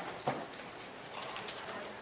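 Room noise of people moving after being asked to stand: shuffling, with a short knock just after the start and faint scattered rustles after it.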